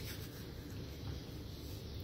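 Quiet, steady rubbing and rustling close to the microphone, like hands moving against each other near the phone.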